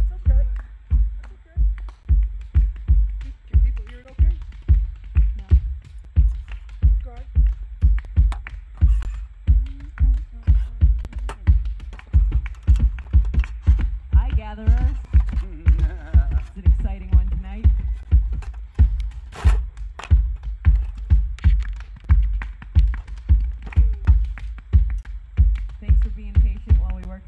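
Band holding a groove: a bass drum beats steadily about twice a second, with faint wavering pitched notes over it near the middle.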